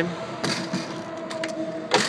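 Light knocks and clicks, a few of them spread through the two seconds, as someone steps into a small travel trailer, with a steady hum underneath.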